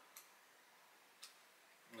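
Near silence: room tone with two faint short clicks, one just after the start and one a little over a second in.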